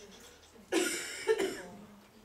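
A person coughing twice in quick succession, about a second in.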